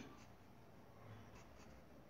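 Faint scratching of a pencil on paper as Arabic calligraphy is written by hand, in a few short strokes.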